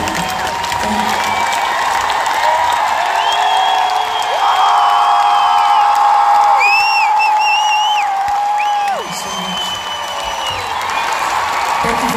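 Arena concert crowd clapping and cheering over live music, with a long note held for several seconds through the middle and high wavering whoops above it.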